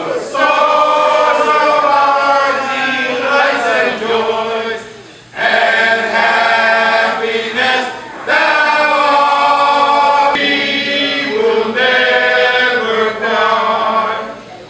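A group of men singing together in harmony, unaccompanied, in long held phrases with brief breaks for breath about five and eight seconds in.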